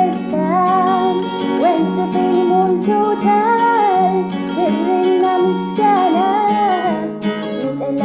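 A woman singing an Amharic gospel song (mezmur) over instrumental accompaniment, her melody rising and falling in long, gliding held notes.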